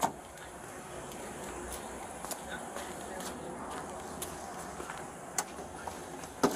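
Low steady hum of an idling patrol car, its air conditioning on, with a few faint scattered clicks and rustles.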